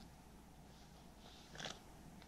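Near silence with a faint steady hush, broken by one brief soft rustle a little after halfway.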